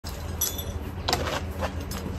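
Metallic clinks and knocks from handling a fuel can and its fittings: a ringing clink about half a second in, then a few sharp knocks, over a steady low hum.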